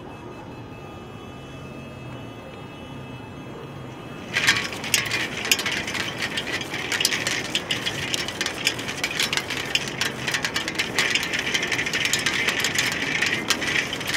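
A film reel spinning fast, a dense rapid clicking rattle that starts suddenly about four seconds in, after a steady low background hum.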